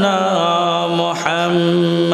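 A man's voice chanting a devotional verse unaccompanied through a microphone and PA, in long, ornamented held notes. The phrase breaks a little over a second in and a new one begins.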